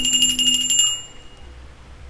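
The tail of an outro jingle: a fast, even run of bell-like ringing, about ten strikes a second, that stops about a second in and leaves faint hiss.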